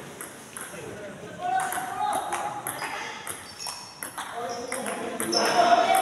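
Sports shoes squeaking on a synthetic badminton court floor, with a few short sharp taps, and voices calling out in the middle and near the end.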